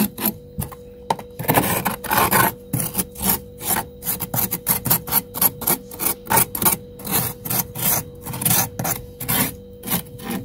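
A metal utensil scraping thick frost in a freezer compartment, in quick repeated rasping strokes, about two or three a second, with one longer scrape between about one and a half and two and a half seconds in.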